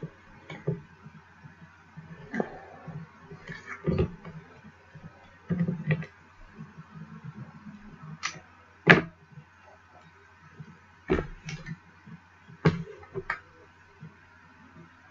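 Double-sided craft tape being pulled off its roll, cut and pressed onto cardstock: scattered clicks, taps and short rustles of tape and card handled on a craft mat, the sharpest about nine seconds in and again around eleven seconds.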